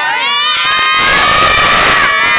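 Crowd cheering and shouting, voices held on long calls, with a dense burst of noise and sharp cracks swelling up about half a second in.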